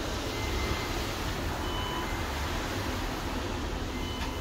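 KONE MonoSpace elevator car with its doors closing, over a steady low rumble. A short high beep sounds about two seconds in.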